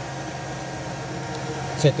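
Steady whooshing hum of cooling fans in an energized industrial drive and control panel, with a faint thin whine running through it. A few light clicks come near the end.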